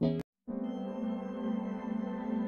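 Background music changes track. A brief sound cuts off with a click and a moment of silence, then a slow ambient track of held, sustained tones begins about half a second in.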